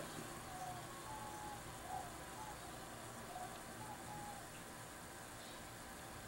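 Quiet room tone with a few faint, brief tones scattered through it and one small bump about two seconds in.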